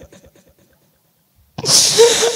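A chanting man's voice dies away in a fading echo through the sound system, then after a moment of near silence he takes a sharp, loud breath into the close microphone about a second and a half in.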